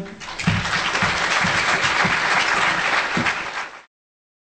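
Audience applauding: many hands clapping in a dense, steady patter that cuts off suddenly just before the end.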